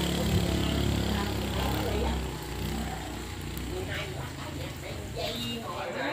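A motor vehicle's engine running low and steady, fading out about two seconds in, with faint voices in the background afterwards.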